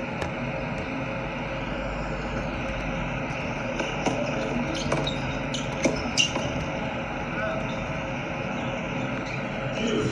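A short tennis rally: about five sharp racket hits and ball bounces between about four and six seconds in, the last two the loudest. They sit over a steady background hum.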